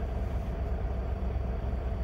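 Steady low rumble of an idling diesel engine, heard from inside a semi truck's sleeper cab, with a faint even hum over it.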